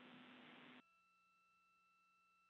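Near silence: a faint hiss on the audio line cuts off about a second in, leaving only faint steady electronic tones.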